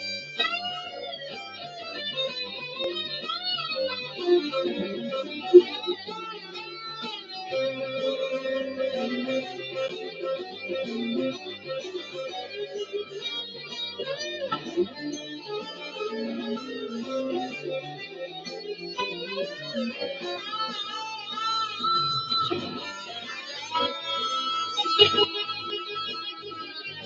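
Electric guitar playing a melodic lead line with bent and wavering notes.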